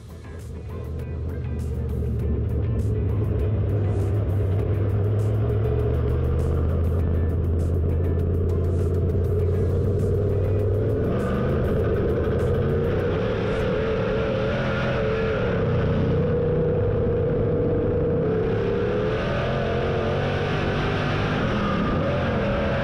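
Dirt late model race car's V8 engine running at speed on the track, heard through an onboard camera mounted low on the chassis. It settles into a steady low drone in the first couple of seconds. From about halfway through, its pitch rises and falls with the throttle.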